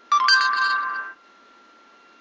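Google voice search app on an iPod touch playing its short electronic chime, a few stacked notes lasting about a second, as it stops listening and takes in the spoken question.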